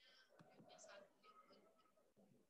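Near silence with faint, indistinct speech in the background.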